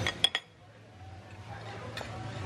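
Three quick clinks of a metal knife and fork against a ceramic plate, then faint dining-room background sound.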